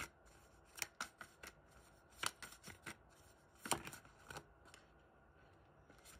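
Faint sound of a tarot deck being handled and shuffled: a scatter of soft, irregular card clicks and flicks with short pauses between them, dying away in the last second or so.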